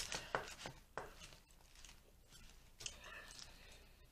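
Faint scrapes, clicks and leafy rustling as a plastic fork tosses and stirs lettuce salad in a clear plastic bowl, with a sharp click about a second in and a run of rustling near the end.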